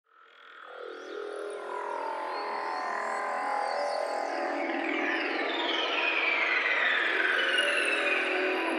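Opening of a psychedelic trance track: layered synthesizer textures fade in from silence over the first two seconds, with sweeping pitch glides falling from high to middle range. There is no kick drum or bass yet.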